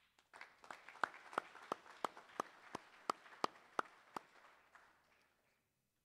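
An audience applauding, with one person's claps standing out loud and regular at about three a second. The applause starts just after the beginning and dies away about five and a half seconds in.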